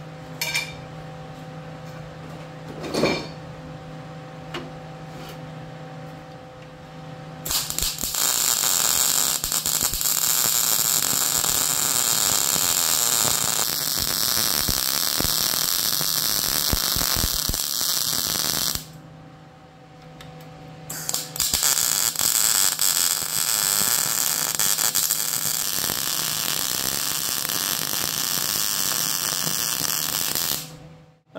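Wire-feed welder laying beads on a steel frame: two long runs of steady crackling arc noise, about eleven and nine seconds, with a two-second break between. Before the first run there is only a steady electrical hum with a single click.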